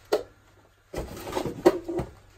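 Handling noise of a plastic pump and its power cable going back into a cardboard box: a short knock at the start, then rustling and bumping from about a second in, with a sharp click near the end.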